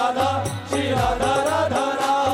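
Live Hindu devotional bhajan: chant-like singing over accompanying music with a steady percussion beat.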